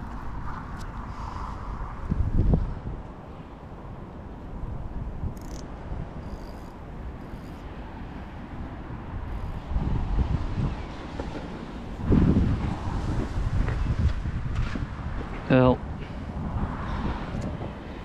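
Wind buffeting the microphone, a low rumble that swells in gusts, most strongly about ten seconds in and again a couple of seconds later. Near the end comes a brief sound from a man's voice.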